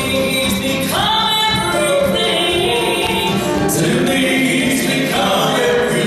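A gospel vocal trio, two men and a woman, singing together in harmony, with a held note sliding up about a second in.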